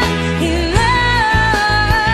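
A pop-rock song: a singer holds long notes that slide from one pitch to the next over a full band.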